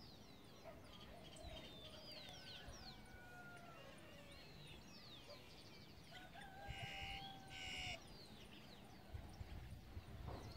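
Faint birds calling: many short falling chirps throughout, with a few longer drawn-out calls. The loudest, harsher call comes about seven seconds in and lasts about a second.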